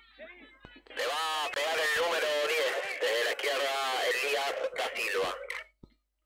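A raised, high-pitched voice sounds for about four seconds, starting about a second in and stopping shortly before the end.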